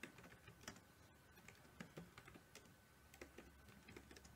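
Faint typing on a computer keyboard: quick, irregular keystroke clicks as a line of text is entered.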